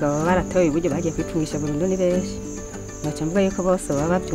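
A woman talking in Kirundi over soft background music, with a steady high chirring of crickets behind her voice.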